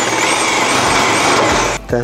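Corded electric drill running steadily under load, boring a screw hole into an aluminium louvre frame; it stops shortly before the end.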